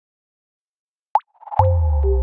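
Logo intro sting: silence, then a short pop a little past a second in, and a second pop about half a second later that opens into a deep held bass note with a higher tone above it.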